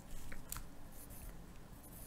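Pencil writing on lined notebook paper: a couple of light taps, then short scratchy strokes as numbers are written.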